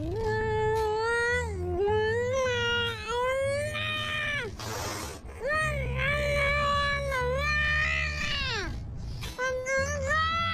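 A woman gagged with duct tape making long, high-pitched wordless cries through the tape, her pitch sliding up and down, with a short breathy sound through the nose about halfway through.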